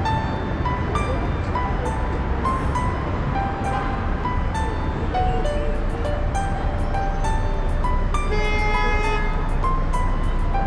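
Background Christmas music: a melody of short notes with a light regular tick, swelling to a fuller chord near the end, over a steady bed of street noise.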